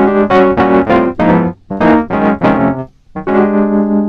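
Sampled Wurlitzer 200A electric piano playing short comping chord stabs in two quick groups, then a held chord near the end. Its tone is roughened by a little added distortion and fuzz.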